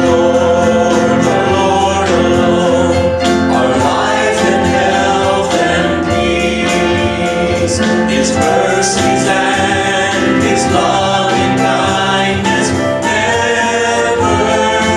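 Gospel hymn sung by male vocalists into microphones, with electric keyboard accompaniment.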